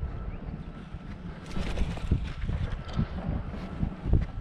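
Gusty wind buffeting the microphone: an uneven low rumble that swells and dips.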